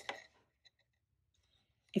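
A brief click and rustle of cardstock being pressed and handled right at the start, then near silence with a few faint ticks.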